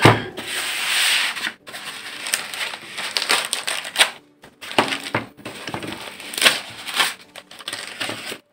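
White foam packing end caps being handled and pulled off a laptop in a plastic sleeve: foam rubbing and scraping with plastic rustling. A dense rustle for the first second or so, then a run of short, irregular scrapes and crinkles.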